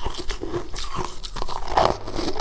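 Close-miked crunching and chewing of frozen sweet ice, a quick run of sharp crisp crunches as the icy ball is bitten and chewed.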